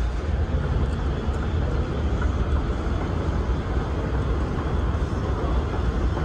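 Steady low rumble under an even background hiss: airport terminal ambience picked up on a handheld phone.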